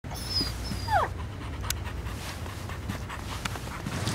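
Small terrier whining: a thin high whine near the start, then a short, steeply falling whine about a second in, followed by scattered light clicks.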